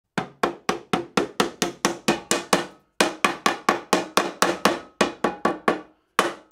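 A hammer tapping the metal lid down onto a can of Minwax polyurethane, about four quick taps a second, each with a short metallic ring, with a brief pause about halfway through.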